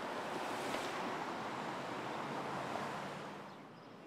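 Road traffic rushing past, tyre and engine noise with one vehicle going by close about half a second in. The noise drops away near the end.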